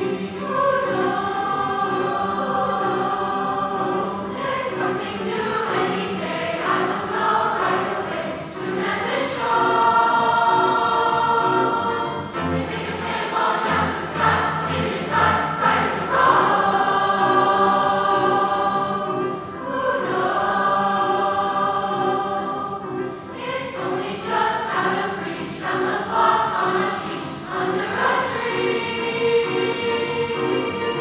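Large mixed choir singing in parts, holding long chords in phrases of a few seconds each.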